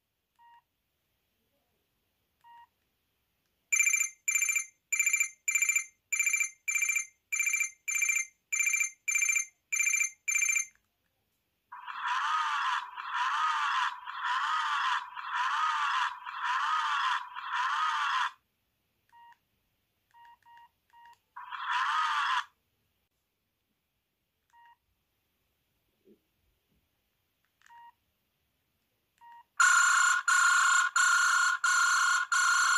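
A Range Rover-branded mini Chinese mobile phone's loudspeaker playing ringtone previews, with faint short key beeps between them as the menu is scrolled. First comes a high ringing pulse repeated about eleven times, then a warbling tone pulsing about once a second, then a brief burst, and a new, louder ringtone starts at the very end.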